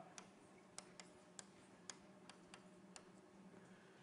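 Near silence broken by about ten faint, irregular ticks of chalk tapping on a blackboard as an equation is written.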